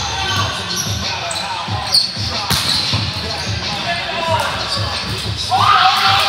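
Volleyballs being hit and bouncing on a hard gym floor, with a sharp impact about two seconds in, brief squeaks of sneakers, and players' voices echoing in a large sports hall, a call rising near the end.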